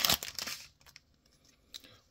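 Foil wrapper of a Topps Widevision trading-card pack crinkling and tearing as it is pulled open, dying away within the first second.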